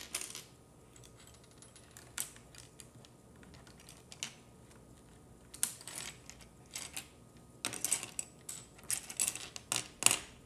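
Small hard plastic puzzle-cube pieces clicking and clattering as they are handled and fitted together: a few sparse clicks at first, then busier runs of clatter in the second half.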